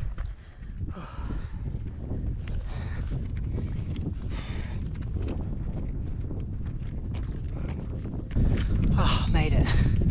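A runner's heavy breathing while climbing a steep hill in the heat, with footsteps on the track and wind buffeting the microphone. The wind rumble gets louder near the end.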